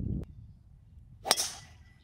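A golf club striking a ball off the tee: one sharp crack about a second in, with a short ringing tail.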